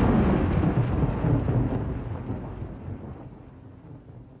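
Low rumble of a thunder-like sound effect closing a hip-hop track, fading steadily.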